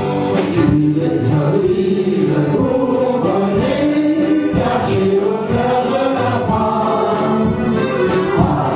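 A group of voices singing a Bourbonnais folk song together, steadily, with no break.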